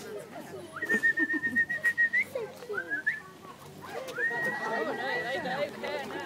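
Whistling: two long, steady high notes, one about a second in and one about four seconds in, with a short rising note between them.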